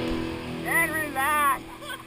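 Rock music fading out, then men on a raft shouting loudly in two short bursts, with no words made out.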